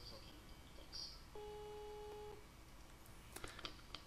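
A faint voicemail beep: one steady electronic tone lasting about a second, starting about a second and a half in, over quiet room tone, with a few soft clicks near the end.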